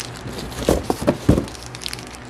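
Handling noise from a small plastic packet being turned over in the hand: light crinkling with a few short clicks and knocks, the loudest a little past a second in.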